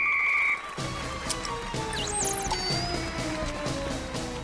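A referee's whistle blown once: a single high, steady blast of about half a second. Background music with a beat then runs to the end.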